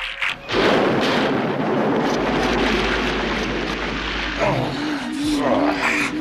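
Cartoon battle sound effects: a long explosive blast with a low rumble, followed near the end by a wavering, warbling electronic tone.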